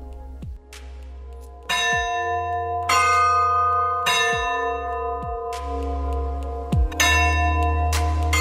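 Bell tones struck four times, each ringing on with long overtones, over a steady low bass and deep booms that drop in pitch.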